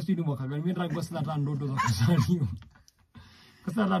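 Only speech: a person talking, then a pause of about a second before talking resumes near the end.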